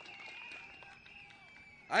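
Faint crowd murmur over a steady high tone, dying away, then a man's amplified voice starting at the very end.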